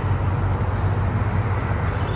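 Steady low rumble of outdoor background noise, unchanging throughout.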